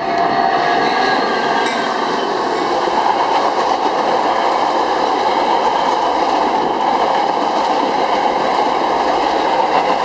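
Metra commuter train, a diesel locomotive followed by stainless-steel bilevel coaches, rolling past close by over a steel girder rail bridge: a loud, steady rumble and clatter of wheels on rail that comes up suddenly as the locomotive arrives. A faint thin whine sounds over it in the first second or two.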